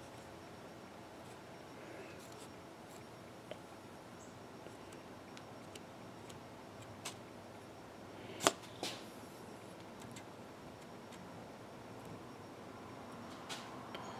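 Faint room tone with a few small clicks and taps from hands working the glued joint of a fishing rod blank. The loudest is a sharp click about eight and a half seconds in.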